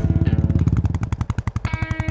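Royal Enfield Bullet 350 single-cylinder engine thumping in a fast, even beat, the Bullet's familiar "dug dug" exhaust note. A guitar chord from the advert's music comes in near the end.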